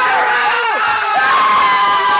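Several young men's voices shouting and yelling over one another in alarm, too jumbled to make out words.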